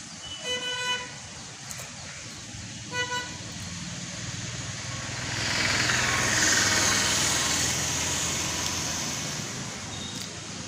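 Street traffic: a vehicle horn gives short toots about half a second in and again about three seconds in. Then a vehicle passes, its noise swelling in the middle and fading toward the end.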